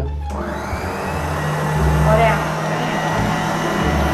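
Electric stand mixer motor spinning up with a short rising whine about a fifth of a second in, then running steadily.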